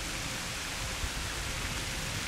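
Pond fountain jets spraying and splashing water, a steady even hiss.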